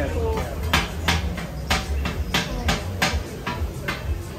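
A quick, irregular run of about ten sharp metal clacks from cooking utensils at a street-food burger grill, over crowd chatter.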